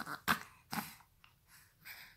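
A young baby making short breathy vocal sounds: about four brief huffs and squeaks with pauses between them.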